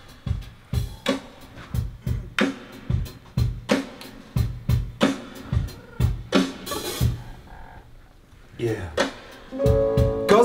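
A drum-style beat of deep kicks and sharp snare-like hits, a few per second. A short hissing burst comes about seven seconds in, the beat drops away briefly, and pitched music starts at the very end.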